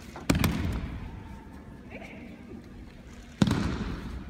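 Two loud breakfall slaps of bodies hitting tatami mats as aikido partners are thrown, about three seconds apart, each echoing in a large hall.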